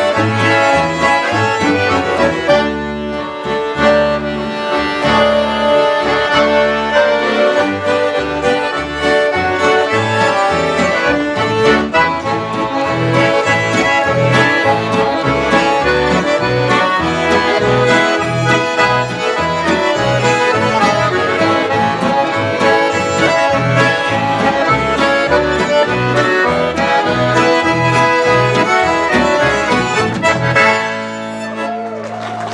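Live folk band of two accordions, fiddle, acoustic guitar and double bass playing a tune. The accordions lead over a steady, even beat of low bass notes.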